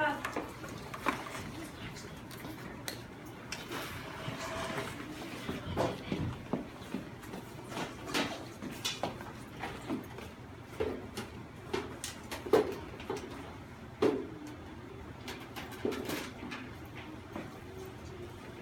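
Scattered small knocks, clicks and rustles of children putting away classroom materials and moving among tables and chairs, with faint low voices in the room.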